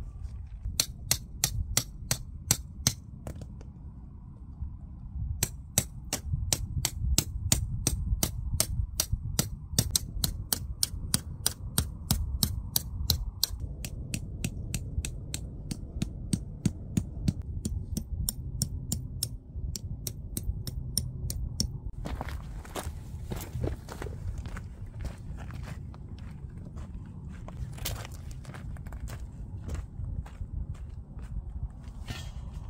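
Tent stakes being tapped into stony ground: rapid, regular sharp taps, about four a second, in two long runs, over a steady low wind rumble on the microphone. Near the end the taps stop and give way to irregular knocks and scuffs on gravel.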